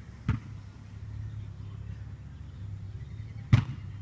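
Two short, sharp knocks about three seconds apart, the second louder, over a low steady rumble.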